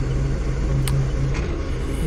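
Doosan 4.5-ton forklift's engine running steadily, heard from inside the cab, as the mast lifts two glass racks at once, a light load. A single sharp click a little under a second in.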